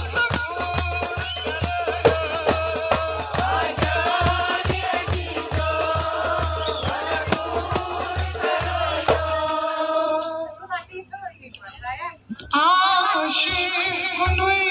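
A woman sings a folk song into a microphone over goblet drums (tumbaknari) beaten in a fast rhythm and a handheld rattle shaking steadily. About ten seconds in, the drums and rattle stop; after a brief lull the singing resumes almost unaccompanied.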